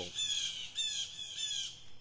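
Blue jays calling: a quick series of about five harsh, squawking calls.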